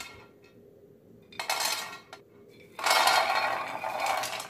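Almonds, walnuts, cashews and pistachios pushed off a plate with a spatula, clattering into a dry nonstick frying pan. There is a short pour about a second and a half in and a longer, louder one near the end.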